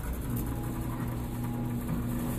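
Claw machine running with a steady hum that starts about a third of a second in, over a low rumble.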